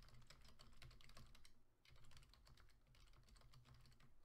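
Computer keyboard typing: a quick run of faint keystrokes with a brief pause near the middle.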